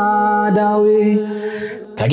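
A single voice chanting one long held note, which fades away near the end.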